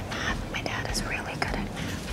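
Two girls talking in whispers, a line of quiet dialogue.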